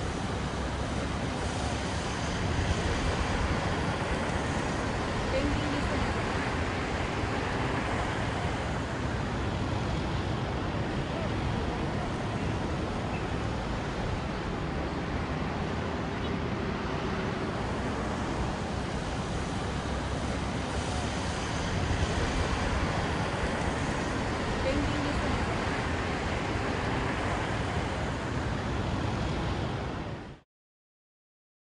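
Steady city road traffic noise, cars passing on a wide road, swelling a little now and then as vehicles go by.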